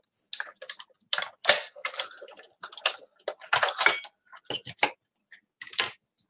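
Hand-cranked die-cutting machine being turned, its plates and die passing through the rollers: a quick, irregular run of clicks and rattles, with one loud click near the end.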